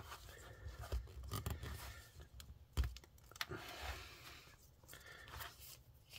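Faint handling sounds of hands pressing and rubbing on a plastic model kit hull: scattered small clicks and scrapes, with one sharper knock a little under three seconds in.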